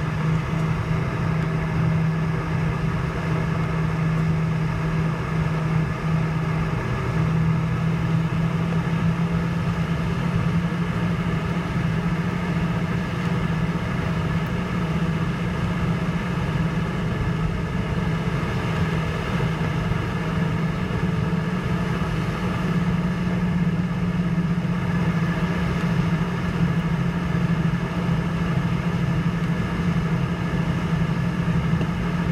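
Airbus A321 turbofan engines at taxi idle heard from inside the cabin: a steady drone with a strong low hum and several steady higher tones, level throughout as the airliner taxis.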